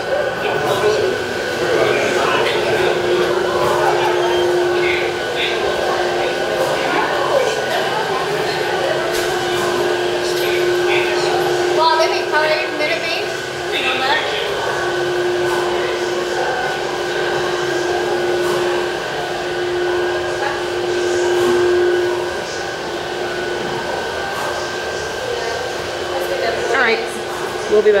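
Bottling line machinery running: a steady mechanical hum whose tone swells and fades in stretches, with a continual clatter of bottles on the conveyors.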